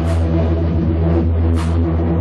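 Witch house electronic music played live: a heavy, steady bass drone with held tones above it, and a short hissing hit at the start and another about one and a half seconds in.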